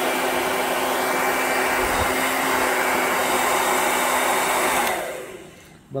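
Remington hand-held hair dryer running steadily on its highest heat setting, a loud even rush of air with a faint motor hum. Near the end it winds down and falls quiet.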